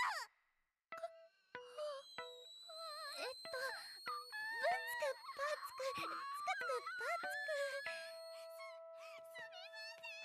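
A girl's voice beatboxing in an anime soundtrack, "bam-chika-boom-chika" with mouth clicks and sliding vocal sounds over music. It starts about a second in, after a brief silence.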